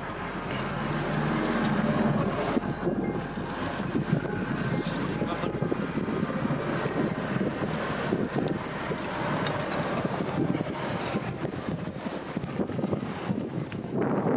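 Outdoor ambience: steady wind noise on the microphone over a constant background rush.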